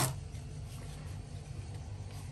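A sharp plastic click right at the start as the glue gun comes free of its clear blister pack, then faint handling of the plastic glue gun over a low steady hum.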